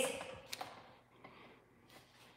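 Quiet room tone after a word trails off, with a faint click about half a second in and a soft, brief rustle in the middle.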